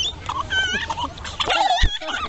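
Young children squealing in high, wavering, gliding cries during rough play, with a dull bump near the end.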